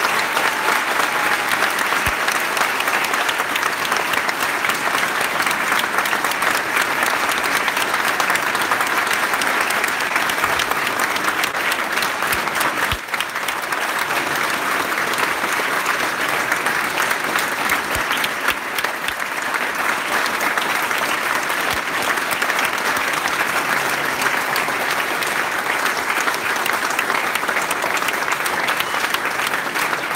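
An audience applauding, a dense, steady clapping that is louder than the speech before it.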